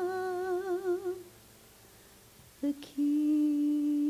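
A woman singing a long held note with a wide vibrato, which dies away about a second in. After a short pause, a lower, steady hummed note begins about three seconds in and holds.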